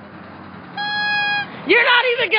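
A man's loud shouted voice starts near the end. Before it there is a quiet gap and a short steady high-pitched tone lasting under a second.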